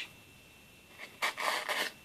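Elastic cord being drawn through a punched hole in a notebook cover: a rough rubbing sound starting about a second in and lasting just under a second.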